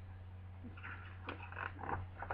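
Struggling to turn a stiff book page: a few short bursts of paper rustling and breathy huffs, about a second in and again near the end. A steady low electrical hum runs underneath.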